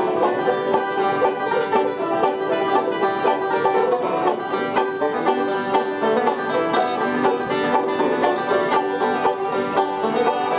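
Several banjos picked together in bluegrass style: a steady, dense stream of plucked notes with no pause.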